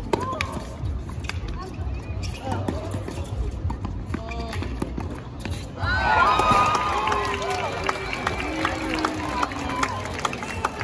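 Tennis doubles rally: sharp pops of rackets hitting the ball over crowd chatter. About six seconds in, as the point ends, the crowd gets louder with many people cheering and shouting together.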